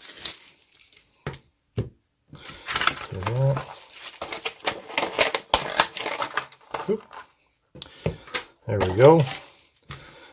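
A thin plastic bag crinkling as a TV remote is slid out of it and handled, with a few sharp clicks and knocks. A man's voice makes brief wordless sounds about three seconds in and again near the end.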